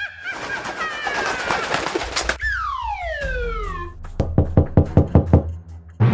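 Cartoon sound effects: a long descending whistle slides down in pitch as the flying character comes down to land. It is followed by a quick run of about seven sharp knocks on a wooden door.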